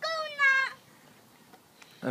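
A person's high-pitched, drawn-out squeal, a little under a second long and falling slightly in pitch, followed by near quiet.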